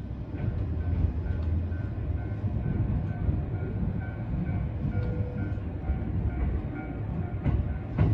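Running noise inside a moving train car: a steady low rumble, with a sharp click about seven and a half seconds in. A level-crossing warning bell rings faintly through the car as the train approaches the crossing.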